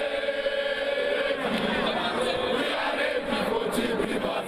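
A crowd of football supporters chanting and singing together, many voices in unison.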